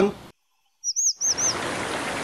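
A bird chirping: a quick run of four or five high, arching notes about a second in, then a steady rushing background noise.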